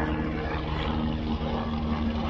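Steady engine drone, a low hum holding several even pitches with a slight rise in one of them about a second in.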